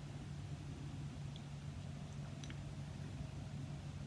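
Quiet room tone: a steady low hum with faint background hiss, and a couple of faint ticks near the middle.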